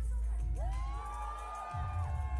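Music with a crowd cheering and screaming over it. A deep bass runs under many overlapping high held voices that start about half a second in.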